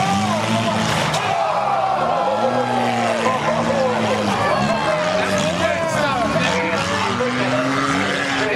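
Several dirt-track race car engines revving and easing off at once, their pitches rising and falling as the cars chase a school bus around the track.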